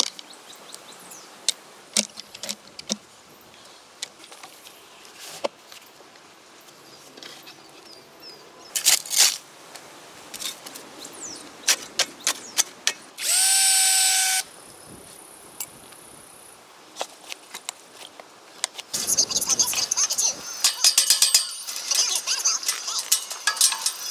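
Fence-repair work: scattered clicks and knocks from hand tools and posts, a power tool running for about a second a little past halfway, and a dense run of rapid metallic clicks near the end as the gate and wire panels are fixed.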